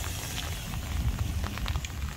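Rain pattering on an open umbrella held just overhead, a light irregular ticking of drops, with a low rumble underneath.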